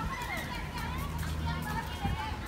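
Background voices of people and children talking and playing in the distance, over a low steady hum.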